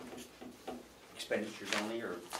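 Indistinct voices talking in a small meeting room, clearer in the second half, with a few short light knocks early on.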